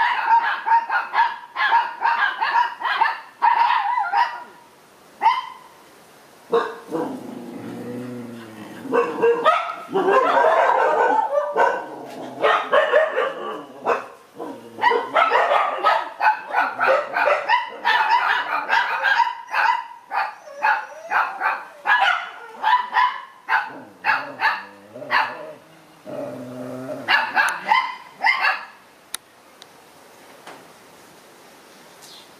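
Dogs barking in quick, repeated runs of several barks a second, with a short lull about five seconds in.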